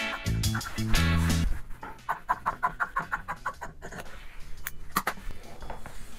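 Background music with plucked guitar and bass that stops about a second and a half in, followed by quieter, rapidly repeated snips of scissors cutting through cotton fabric.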